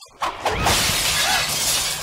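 Glass shattering with a sudden loud crash about half a second in, then a long noisy spray of breaking glass that slowly dies down.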